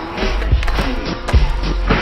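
Rap backing track with a steady beat, mixed with skateboard wheels rolling on concrete and two sharp clacks of the board.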